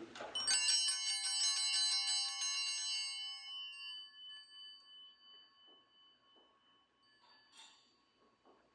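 Altar bells shaken rapidly, a cluster of small bells ringing together, then dying away over a few seconds: the signal of the elevation of the host at the consecration. A faint tick near the end.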